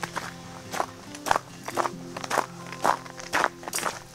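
Footsteps on an icy, snowy trail, about two steps a second, boots fitted with ice cleats, over background music with held notes.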